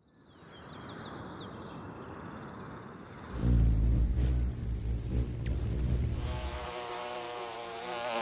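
Nature sounds that follow the pictures: faint insect chirping at first, then a loud low hum of a hovering hummingbird's wings from about three seconds in, then a bee buzzing near the end.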